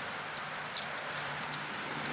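A few faint metallic clinks from a steel trap and its hanging chain as the wax-dipped trap is held and shaken over the pot, over a faint steady low hum.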